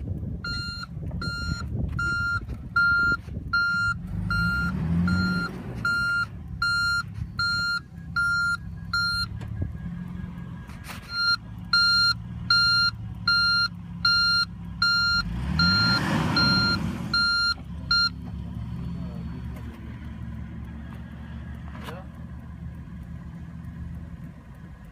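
Toyota Land Cruiser V8 running in reverse with its reversing warning beeping about twice a second, stopping for a moment in the middle and cutting off about three quarters of the way through. The engine revs up briefly about two thirds of the way in as the SUV, bogged in soft sand, tries to back out.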